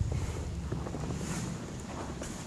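Wind buffeting the microphone: a steady low rumble, with a bump right at the start.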